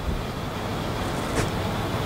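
Steady low rumbling noise with a light hiss, and a faint click about one and a half seconds in.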